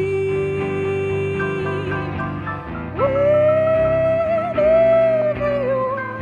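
Singing with electric guitar and upright bass accompaniment: a voice holds one long note for about two seconds, then leaps to a higher note about three seconds in and holds it with vibrato.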